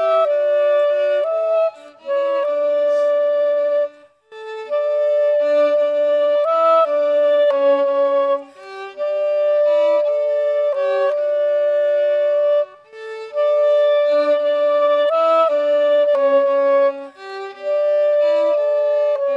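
Violin and clarinet playing a duet, two melody lines together. The music moves in phrases with several brief pauses between them.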